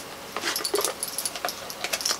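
A cardboard perfume box and glass bottle being handled: a run of light rustles and small clicks, with bracelets clinking. Two short squeaks come about half a second in.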